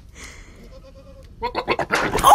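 Goat bleating: a loud wavering call that starts about one and a half seconds in, after a quieter stretch.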